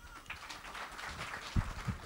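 Audience applauding with many light hand claps, with two dull thumps about a second and a half in.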